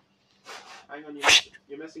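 A person makes one short, sharp, loud burst of breath noise about a second in, amid quiet speech.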